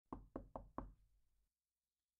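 Four quick knocks on a door, all within the first second, each dying away fast.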